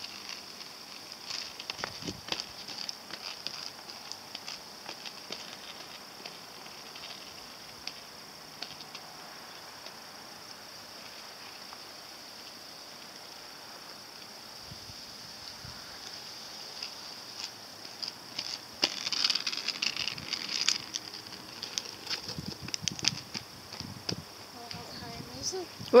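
Inline skate wheels rolling over rough asphalt with a scatter of small clicks and crackles. A steady high-pitched buzz runs underneath and grows louder about two-thirds of the way in.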